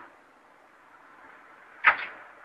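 Faint steady hiss, broken near the end by one sudden short, loud sound that dies away quickly.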